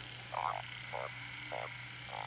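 Narrow-mouthed frogs (อึ่ง) calling after rain: short, low croaks repeated about twice a second.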